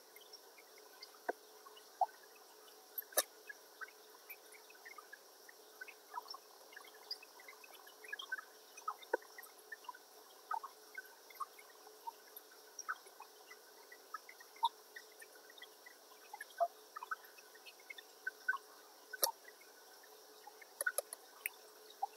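Faint room tone with scattered small, sharp clicks and ticks at irregular intervals.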